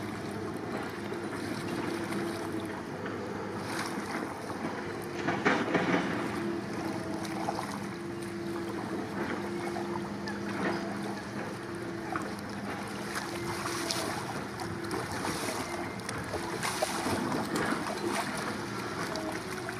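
Paddle strokes splashing and water sloshing around a surfski, with wind on the microphone. There is a louder splash about six seconds in and another near the end, as the boat is leaned over into the water.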